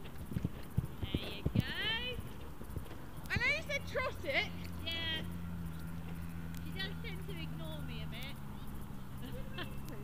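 A horse's hooves thudding on grass turf as it canters, the beats clearest in the first two seconds.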